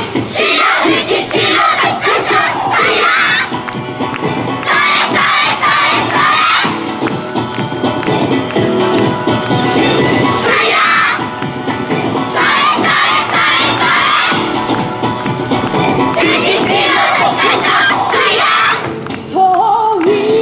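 A street dance team of young women shouting chants in unison over their recorded dance music, in shouted phrases of two to three seconds with short breaks between. Near the end the music with sung vocals comes back to the fore.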